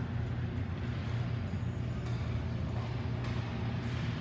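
Indoor ice rink ambience: a steady low hum with a faint haze of distant play on the ice.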